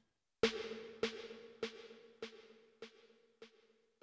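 Roland TR-8S snare drum hit once, then repeated by the delay about every two-thirds of a second, each echo quieter than the last, six or so fading away. Each echo carries a short reverb tail, because the delay is being sent through the reverb.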